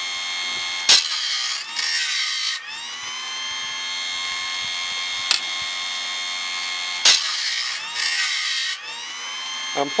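Homemade automatic bandsaw blade sharpener grinding a Wood-Mizer silver tip sawmill blade: the grinding-wheel motor runs with a steady whine, and twice (about a second in and about seven seconds in) the wheel grinds a tooth in two short rasping passes, the whine rising back in pitch after each. A single sharp click comes about five seconds in.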